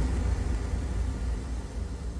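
A low, steady rumble with a faint hiss, slowly getting quieter; no music or voice.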